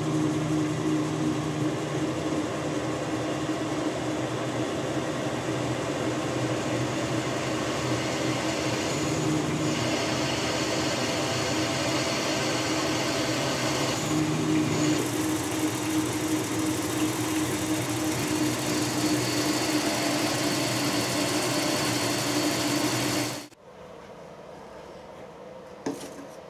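Powered drill spindle running steadily with a constant hum while a twist drill cuts through a metal workpiece held in the lathe chuck; the sound cuts off abruptly near the end.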